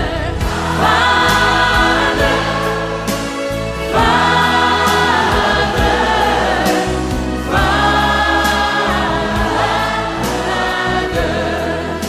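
Choral Christian music: a choir singing long held chords over a sustained bass, with a new phrase entering about every three and a half seconds.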